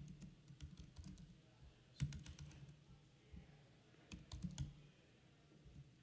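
Faint typing on a laptop keyboard: three short runs of key clicks about two seconds apart, over a low steady hum.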